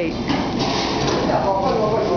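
Indistinct background voices over steady room noise, with a brief rustle in the first second.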